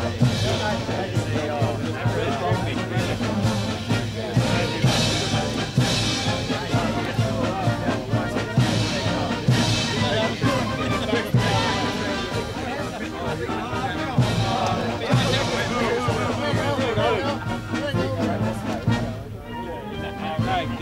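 A brass band playing, with crash accents about every second or two, over the chatter of a crowd. The music dips briefly near the end.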